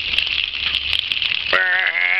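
Water spraying and pattering steadily onto toy cars and paving, a continuous hiss. About one and a half seconds in, a child's voice starts a long, drawn-out, steady-pitched vocal sound.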